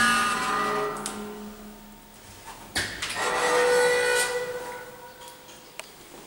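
1960s Segulift elevator doors sliding with a whining, ringing tone, heard twice. The first run fades over about two seconds; the second starts with a click about three seconds in and dies away about two seconds later.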